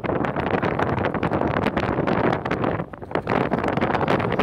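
Wind buffeting the microphone: a dense, gusting rush that drops briefly about three seconds in.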